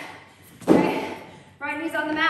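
A single thud about two-thirds of a second in, a foam balance pad dropped flat onto a wooden floor; a voice starts near the end.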